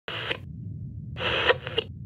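Electronic logo sting: two short bursts of static-like noise, the second starting about a second in and lasting longer, with sharp clicks, over a steady low rumble.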